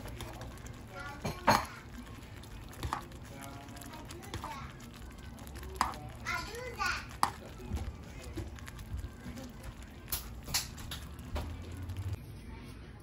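Metal spoon stirring thick gravy in a saucepan, with a few sharp clinks against the pan, the loudest about a second and a half in. Voices talk indistinctly in the background.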